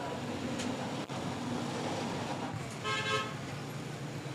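Steady street traffic noise, with a brief vehicle horn toot about three seconds in.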